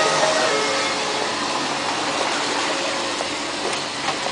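Electric commuter train slowing to a stop beside the platform: a steady whine dies away about half a second in, leaving an even rolling hiss that slowly eases off.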